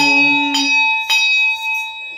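A hand bell is rung with three strikes about half a second apart, and its clear ringing tones hang on and slowly fade. A chanting voice trails off in the first half-second.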